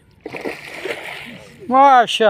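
Water splashing for over a second at the river's edge as a hooked fish thrashes while it is being landed, then a man's loud shout near the end.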